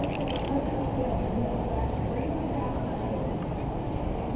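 Steady wind rumble on a GoPro's microphone during a rappel down a high building face, with a few light clicks in the first half second.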